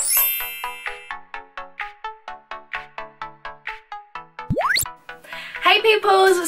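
Channel intro jingle: a sparkling chime, then a light melody of short plucked notes at about five a second, ending in a quick rising whoosh.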